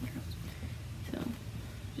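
A steady low hum, with a softly spoken word about a second in.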